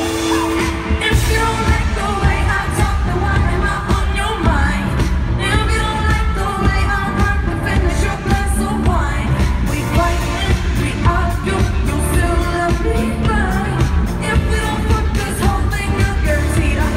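Live pop song: a female singer singing into a microphone over a full band with drums, bass and keyboards, with a steady drum beat and heavy low end through the PA.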